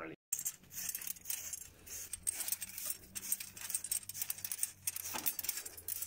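Wire brush scrubbing a spiral steel turbulator from a Fröling T4e wood chip boiler: a quick, irregular run of scratchy strokes as encrusted combustion ash is scoured off the coil.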